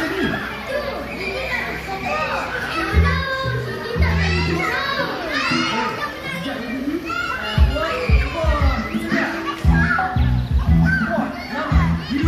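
A group of young children calling out and chattering excitedly, high voices overlapping, over loudspeaker music with strong bass notes that come in about three seconds in and again from near the middle.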